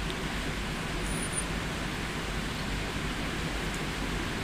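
Steady background hiss with no speech: an even, featureless noise, with a brief faint high tone about a second in.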